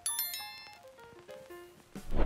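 Background music: a bright cluster of ringing, bell-like notes at the start that die away, followed by a few soft single notes.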